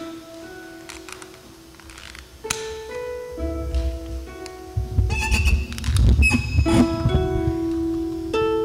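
Concert harp playing slow plucked notes that ring on, with deeper bass notes joining from about three seconds in.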